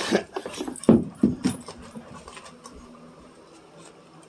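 A dog moving about during rough play, with a cluster of short knocks, scuffs and brief low sounds in the first two seconds, then quieter.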